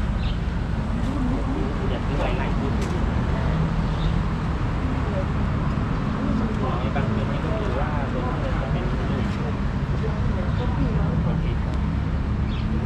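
Background voices of people talking over a steady low hum.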